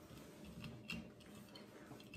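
A few faint ticks of a plastic spoon against the inside of a glass mason jar as an egg is scooped out of the liquid.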